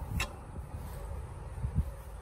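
Quiet outdoor background with a steady low rumble, a short click about a quarter of a second in and a soft knock near the end.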